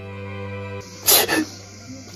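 Sad bowed-string music holds a low note and cuts off just under a second in; then a man lets out two sharp, loud bursts of breath in quick succession.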